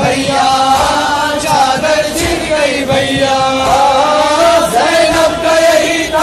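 A male reciter chanting a noha, a Shia lament sung in Hindi/Urdu, with other voices joining, in long held lines that glide in pitch.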